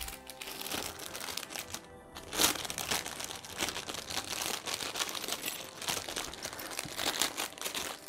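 Clear plastic packaging bag crinkling as it is handled and opened to take out a small metal box lock, a dense crackle that pauses briefly about two seconds in. Faint background music underneath.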